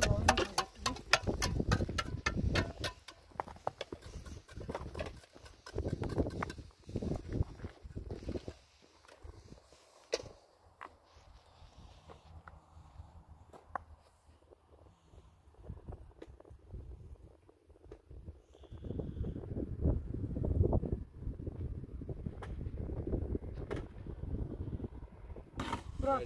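Block-laying: a mason's trowel knocking and scraping on hollow concrete blocks and mortar. A quick run of sharp taps comes near the start and scattered knocks follow, with stretches of low rumbling noise, strongest in the second half.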